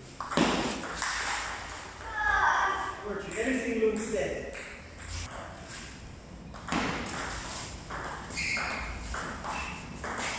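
Table tennis rally: the ball clicks back and forth off the rubber-faced paddles and the table top in quick, irregular hits, echoing in a large hall.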